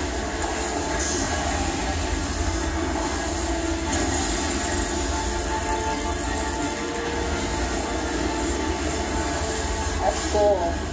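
Steady roaring rumble of a burning-building fire from a TV drama's soundtrack, played through a television in the room, with faint pitched tones from the score underneath.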